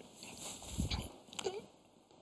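A pause in a man's speech: a soft low thump, then a mouth click and a brief hesitant vocal sound about a second and a half in, before it falls near quiet.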